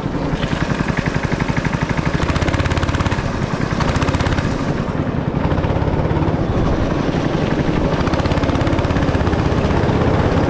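Go-kart engine running under throttle while the kart is driven through the corners, heard from the driver's seat, with a rapid, even pulse of firing strokes.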